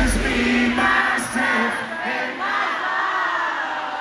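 Arena concert crowd screaming and cheering, many voices at once. The song's heavy bass drops out about half a second in, leaving the crowd noise on top of faint music.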